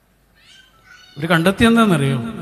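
A man's wordless, drawn-out vocal cry into a microphone, starting about a second in and sliding down in pitch near the end.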